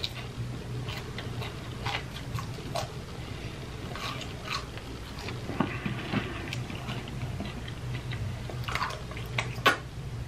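Close-up mouth sounds of a person eating a fried mozzarella stick: chewing with many short wet clicks and lip smacks throughout, the loudest smack near the end. A steady low hum runs underneath.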